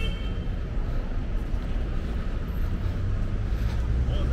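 Outdoor street ambience: a steady, uneven low rumble with a brief high chirp at the very start.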